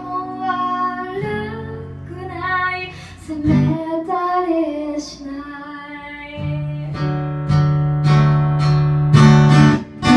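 A woman singing with her own strummed acoustic guitar. After about six seconds the voice drops out and the guitar strums on, louder toward the end.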